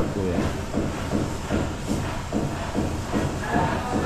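Indistinct background voices with music mixed in; the router is not running.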